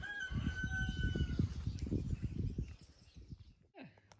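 A rooster crowing: one long held call that ends about a second and a half in, with low rumbling thumps beneath it.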